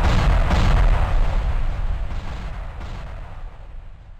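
Cinematic boom sound effect on an animated end screen: a loud rumble with a few faint knocks in it, fading away steadily over several seconds.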